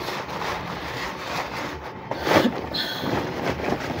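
Fabric rustling as a sewn cloth sleeve is handled and turned right side out by hand, with a couple of sharper crumpling sounds past the middle.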